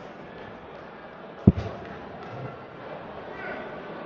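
A dart striking a bristle dartboard once, a sharp short thud about one and a half seconds in, over a low steady background murmur.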